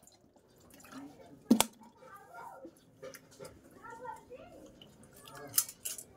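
Water poured from a plastic bottle, then a single sharp knock about a second and a half in. Faint voices in the background and a few light clinks near the end.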